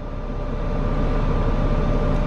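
Steady low hum of a running car heard from inside its cabin, with a faint steady whine over it.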